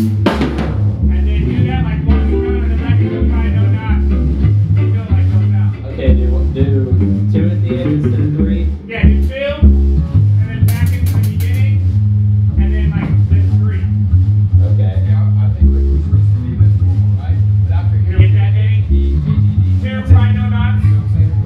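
A ska band rehearsing a tune: electric bass, guitar, keyboards and drum kit playing together, with a wavering lead melody on top. A cymbal crash comes about eleven seconds in.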